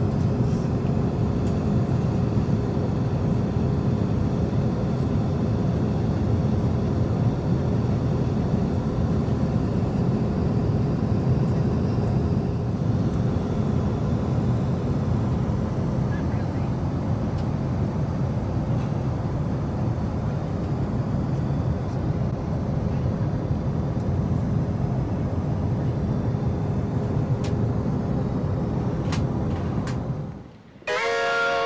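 Steady low rumble of a moving vehicle with a constant hum over it, and a couple of faint clicks near the end.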